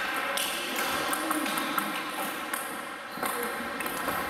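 Table tennis balls ticking off tables and bats: irregular light clicks throughout.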